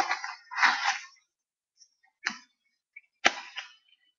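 Scissors cutting the tags off small beanbags, with handling rustles: a few short, separate snips and rustles, and a sharp click a little after three seconds in.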